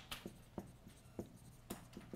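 Dry-erase marker writing on a whiteboard: a few short, faint strokes, about one every half second.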